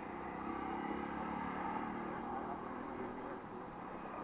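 Motorcycle engine running steadily while riding along a road, its faint even note under steady road noise.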